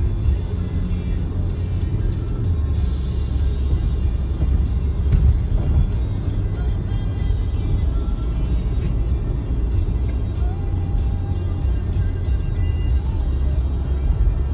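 Road noise inside a moving car: a steady, loud low rumble of tyres and engine at highway speed, with music playing faintly underneath.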